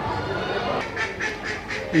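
Caged poultry calling in a show poultry shed: a few short, duck-like calls about a second in, over a steady background of shed and crowd noise.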